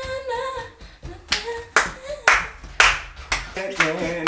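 Hand claps keeping a steady beat, about two a second, starting about a second in, with a voice singing a tune over them in place of music.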